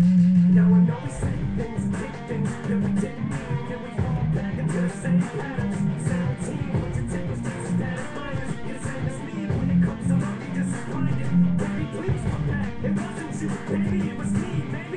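Guitar music with a steady rhythm, an instrumental stretch of a song; a long held note ends about a second in.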